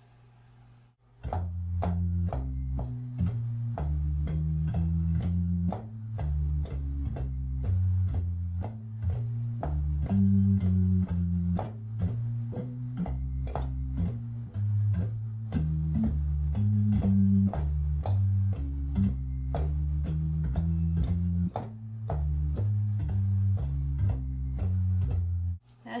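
Hammond B3 organ playing a swinging left-hand walking bass line in F blues on the manual, one note per beat, stepping through the low register, with a light click at the start of each note; with no bass pedal underneath it has a good swing but is missing some guts in the bottom end. It starts about a second in and stops just before the end.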